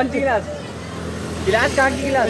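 Young men laughing, briefly at the start and again near the end, over the steady low hum of a motor vehicle going by on the street.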